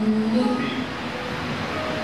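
A man's amplified voice draws out one word, then gives way to a steady background sound with a few faint held tones under it.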